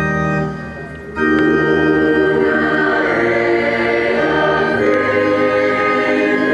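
Church organ playing sustained chords with a choir singing. The music drops away briefly about a second in, then comes back in.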